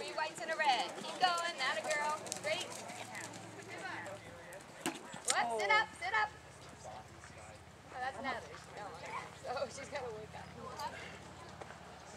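Hoofbeats of a horse ridden across a sand show-jumping arena, with people talking nearby over them.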